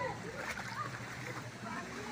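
Footsteps wading through shallow floodwater over railway track, splashing, with faint voices in the background.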